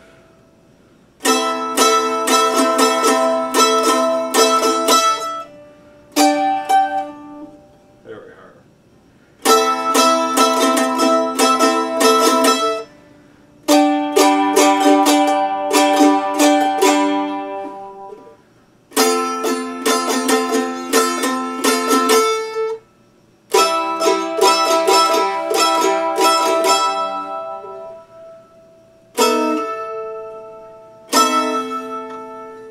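F-style mandolin, its paired strings newly fitted, strummed in short chord phrases of a few seconds each, with brief stops of about a second between them.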